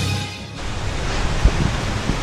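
Background music fades out in the first half second, giving way to a steady rushing noise of wind on an action camera's microphone, with a low thump about one and a half seconds in.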